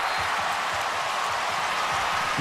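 Large stadium crowd cheering steadily, a continuous wash of many voices in reaction to an interception in the end zone.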